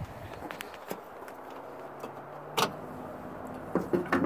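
Pickup truck hood being lifted open by hand: low handling noise with a sharp metallic click about two and a half seconds in and another near the end.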